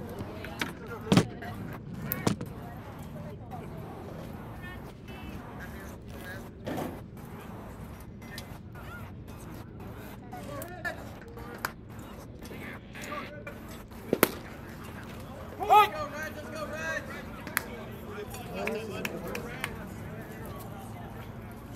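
Ballpark ambience: scattered, faint voices of players and spectators over a steady background, broken by a few sharp pops, the loudest about fourteen seconds in and two smaller ones in the first couple of seconds.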